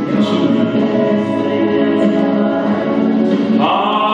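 Live soul ballad sung by several voices together, with no clear words. Near the end a man's solo voice comes in strongly on a long held note with vibrato.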